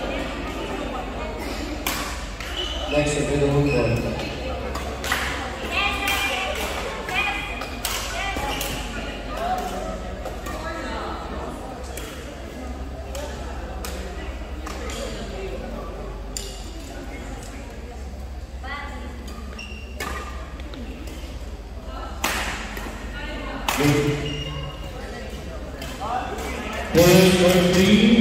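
People talking and calling out in a large indoor sports hall, with scattered sharp knocks and clicks and a steady hum from the hall.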